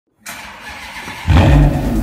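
A vehicle engine starts suddenly about a second in and keeps running loud and low, after a quieter hiss at the start.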